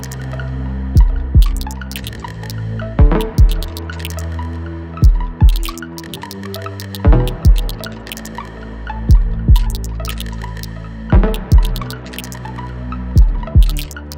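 Ambient electronic music: deep thuds falling in pairs about every two seconds over a sustained low drone and held tones, with many short, sharp clicks scattered through it.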